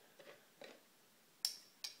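Two light, sharp clicks of metal kitchen tongs, about half a second apart, as they are worked and lifted from a foil-lined glass bowl.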